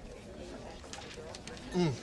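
A man's short, low 'mm' hum, falling in pitch, as he tastes a sip of coffee, heard near the end over a faint low murmur of room tone.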